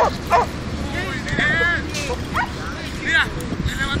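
A dog barking in a few quick, sharp barks at about three a second, then giving several high-pitched rising-and-falling yelps while working a decoy in a padded bite suit.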